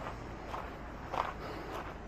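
Footsteps of a person walking at an easy pace on a dirt and gravel lane, a short crunch a little under twice a second.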